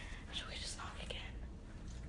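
Girls whispering to each other, close to the phone's microphone.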